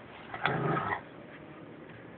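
A dog vocalizing once, a short pitched sound lasting about half a second.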